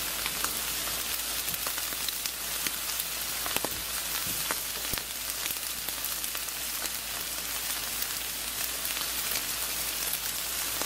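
T-bone steak sizzling on a charcoal grill over open flame: a steady hiss with scattered pops and crackles.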